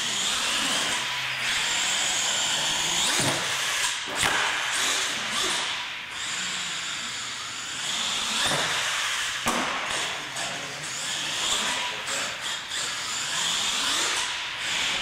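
Radio-controlled monster truck's motor whining, rising and falling in pitch as the truck speeds up and slows, with a few sharp knocks about three, four and nine seconds in.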